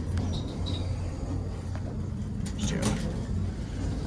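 Steady low hum inside a Montgomery hydraulic elevator car, with a few short clicks about two and a half to three seconds in.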